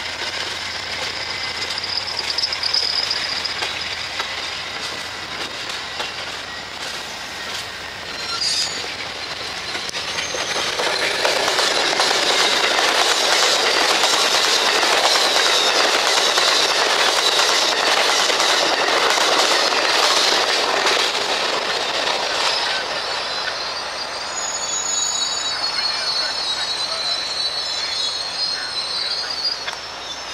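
Amtrak passenger train's stainless-steel cars rolling past at speed, wheels clattering on the rails with a high-pitched wheel squeal at times; the rumble swells to its loudest through the middle and eases off toward the end.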